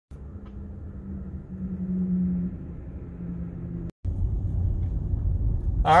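Low rumble and a steady hum inside a Tesla Model S cabin, broken by a brief dropout about four seconds in. After it comes a deeper, louder rumble of road noise as the car rolls at about 15 mph.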